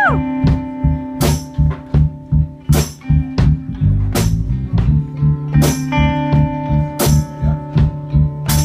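Live blues band playing an instrumental passage: a drum kit keeps a two-four beat with strong hits about every second and a half and lighter ones between, under a walking bass line and electric guitar. A guitar string bend rises and drops back right at the start.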